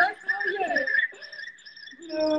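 Speech only: a voice talking for about the first second, then a quieter lull.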